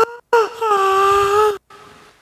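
A man's voice held in one long, high, wordless "aaah" of a little over a second, dipping slightly in pitch at the start and then steady before stopping. It acts out the relief of a prisoner let up to breathe after his head was held under.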